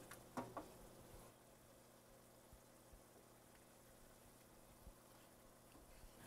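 Near silence: room tone, with a few faint clicks in the first second and a couple of tiny ticks later.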